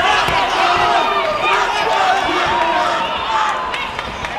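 Crowd of spectators shouting and cheering, many voices at once, with a few sharp knocks among them.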